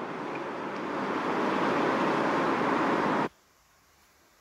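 A steady rushing noise that grows louder over about three seconds, then cuts off abruptly.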